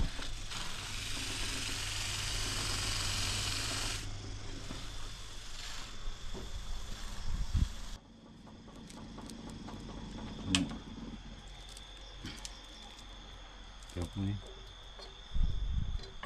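Small electric grinding wheel running with a steady hum while coral is held against it, a loud grinding hiss for the first four seconds and fainter after. About eight seconds in it stops abruptly, leaving a steady high insect chirring and a few small clicks.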